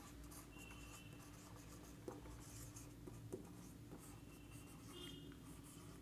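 Faint marker pen writing on a whiteboard: soft strokes with a few light taps and brief squeaks, over a steady low room hum.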